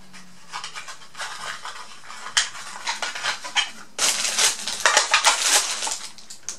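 Small product packaging being handled and unpacked: scattered light clicks and rustles of plastic and cardboard, turning into a thicker run of crinkling during the last two seconds.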